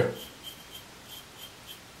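Fingertips rubbing over a freshly shaved chin and neck, a faint scratching in several short strokes, feeling for leftover stubble after the last razor pass.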